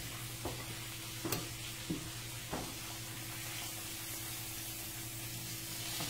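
Eggs frying in a skillet with a steady soft sizzle. A low hum runs underneath, and a few light knocks come in the first half.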